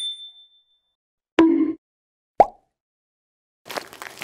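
Animated end-card sound effects: a short bell-like ding, a knock with a brief low tone about a second and a half in, and a sharp pop a second after that. Near the end a noisy rustling swish begins.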